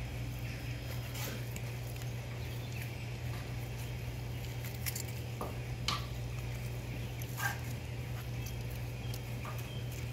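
Steady low hum with a few faint clicks and scrapes of a knife working the skin off a raw whole chicken on a cutting board.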